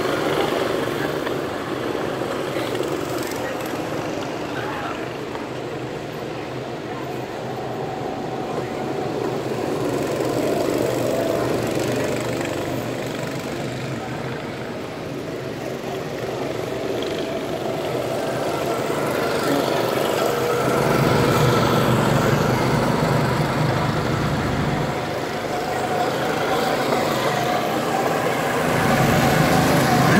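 Go-kart engines running on a track, a continuous drone that swells and fades as karts pass, louder about two-thirds of the way in and again near the end.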